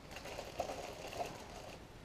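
A plastic bag full of small ceramic tiles being handled: faint crinkling of the plastic with quick, irregular small clicks as the tiles shift against each other.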